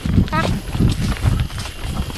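Irregular low thuds of footsteps and a hand-held camera jostling while people walk on a dirt path, with a brief snatch of a voice about half a second in.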